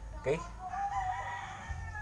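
A rooster crowing: one long, high call lasting about a second and a half.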